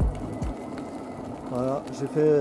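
Low, even wind and rolling noise on the camcorder's microphone while riding an electric unicycle along a paved lane. A man's voice starts near the end.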